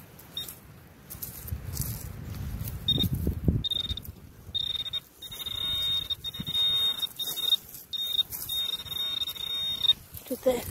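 Garrett Pro Pointer pinpointer giving its steady high beep as it is probed into the hole, signalling metal in the soil. The tone comes in short bursts about three seconds in, then sounds almost without a break from about halfway, cut by brief gaps. Before the tone, the pinpointer's tip makes a rough scraping through the dirt.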